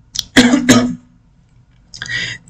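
A man clearing his throat: two short, close pulses in about half a second, followed near the end by a breath in.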